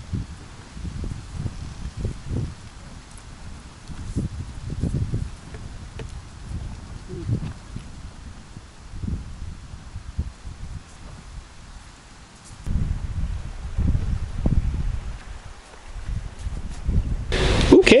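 Gusty wind rumbling on the microphone in irregular low bursts, with leaves rustling.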